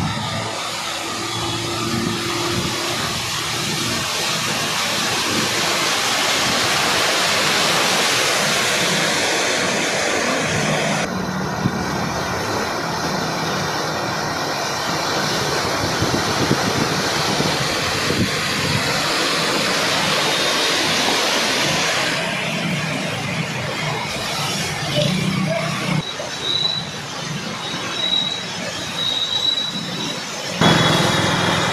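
Floodwater churning and splashing as vehicles drive through a waterlogged street, with engine hum underneath. The steady rushing noise changes abruptly about a third and two-thirds of the way through, and turns choppier near the end.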